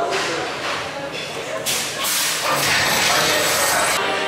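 A roller coaster station with a voice early on, then a loud steady rushing hiss for about two seconds from a little before halfway, in keeping with the coaster train and its station machinery.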